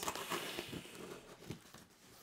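Packing tape on a cardboard box being cut and pulled free, a dry ripping and crinkling that fades over the first second, with one light tap about a second and a half in.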